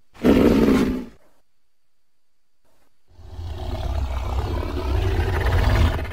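Designed creature sound effect, the call of an imagined elephant-like beast: a short call under a second long, then after a pause of about two seconds a longer, deep call of about three seconds, heavy in the bass, that grows louder toward its end.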